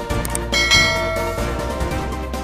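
Background music with a bright chime sound effect that rings out about half a second in and fades within a second, the bell-style cue of a subscribe animation.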